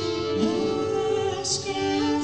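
A woman singing live into a microphone over layered, sustained looped tones that hold steady beneath her voice.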